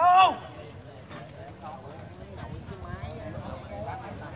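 A man's loud shout in the first half-second, its pitch rising then falling, then overlapping voices of spectators and players chatting.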